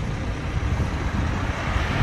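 Roadside highway traffic noise, with wind buffeting the phone's microphone in an uneven low rumble.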